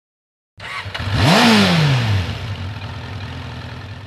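A single engine rev starting about half a second in. The pitch climbs for under a second, then falls back over the next second while the sound slowly fades.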